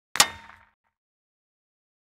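A single short metallic clang sound effect that rings briefly and dies away within about half a second, marking the change to the next number slide.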